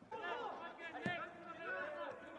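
Faint voices calling out around a football pitch, picked up by the pitchside microphone, with a single sharp knock about a second in.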